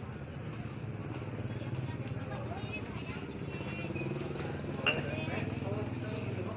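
Indistinct chatter of market shoppers over a motorcycle engine idling steadily, with one sharp knock near the end.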